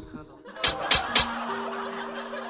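Comedic laughing sound effect: three quick snickers about a quarter second apart, followed by a held note of background music.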